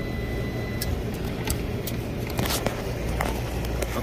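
Steady low hum of the unit's fan motors running while its Copeland compressor stays silent, locked open in internal thermal overload. A brief steady high beep sounds in the first second, and light clicks and rattles of wiring being handled come through the rest.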